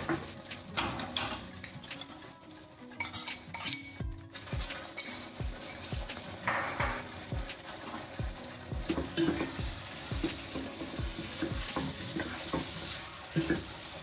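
Potatoes and spices frying in oil in a stainless steel pot, sizzling, with a metal spoon scraping and knocking against the pot as they are stirred. Chopped tomatoes are tipped in partway through.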